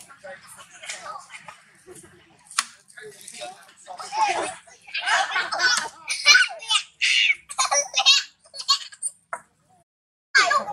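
Young macaque giving a rapid series of high-pitched, wavering squeals in short bursts, starting about four seconds in after quieter scattered sounds.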